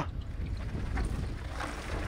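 Wind rumbling on the camera microphone, with the rushing scrub of a mountain bike's tyres skidding down loose, dusty dirt.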